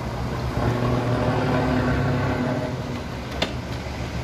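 Mitsubishi Fuso FM215 truck's 6D14 inline-six diesel engine running as the truck gets under way, a steady engine note that swells about half a second in and eases off before three seconds. A single sharp click comes near the end.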